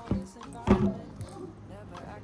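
Clothes handling: a knit cardigan is grabbed and lifted, giving two sharp knocks, the second louder, with a light metallic jangle from a charm bracelet on the wrist.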